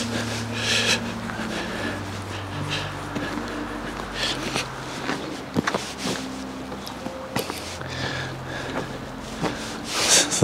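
A man's breathing close to the microphone: several breaths or sniffs a second or more apart, over a low steady hum.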